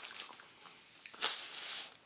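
Soft rustling of a paper sandwich wrapper as the sandwich is handled and lifted off it, with a couple of brief, slightly louder rustles past the middle.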